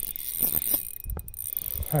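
Daiwa spinning reel being wound while a freshly hooked bream is fought on light line, its mechanism giving short clicks.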